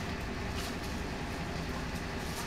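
Steady low rumble of the background inside an ambulance's patient compartment, with a few faint soft rustles as a blood pressure cuff is picked up and handled.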